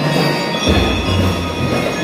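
School drum and lyre corps playing: mallet keyboard instruments ringing over a low sustained bass note that comes in about a third of the way through.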